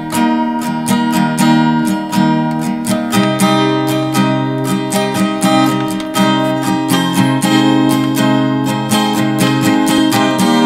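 Acoustic guitar strummed in a steady rhythm, chords ringing between the strokes, with no singing yet.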